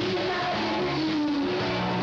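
Music with guitar, its notes held steadily over a dense backing.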